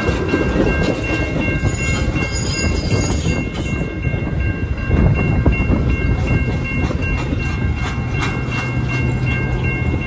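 Metra bilevel passenger cars rolling past a grade crossing: a loud steady rumble with repeated wheel clacks over the rails, while the crossing bell rings throughout. Near the end a low engine hum grows as the locomotive at the rear of the train draws near.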